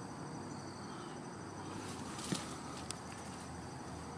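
Faint, steady chirping of insects in the background, with a couple of soft clicks near the middle.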